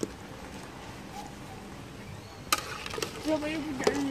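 Metal ladle knocking against a large aluminium cooking pot: one sharp knock about two and a half seconds in, then a few lighter clicks, over a quiet steady background.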